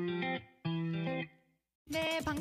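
Two short electric guitar chords, each held about half a second and then cut off, with a silent gap between them. Near the end a different sound with gliding pitches begins.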